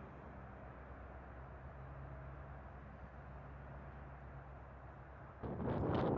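Faint steady outdoor background with a low hum, then wind starts buffeting the microphone about five and a half seconds in and becomes the loudest sound.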